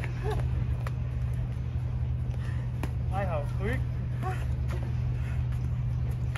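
Steady low outdoor hum, with brief voices in the middle and two sharp clicks in the first half.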